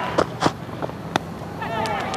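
A handful of sharp knocks and taps, irregularly spaced, picked up by on-field microphones at a cricket match over a steady low ground ambience.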